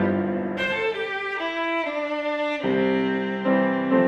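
Violin playing a slow, bowed melody over piano accompaniment. The piano's low notes drop away about a second in and return with a low chord past the middle.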